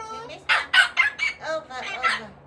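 Pet parrot giving a quick run of loud, harsh squawks, then another call near the end.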